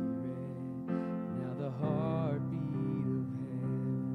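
Soft, slow keyboard music: sustained chords changing every second or so, with a melody note that wavers in pitch about two seconds in.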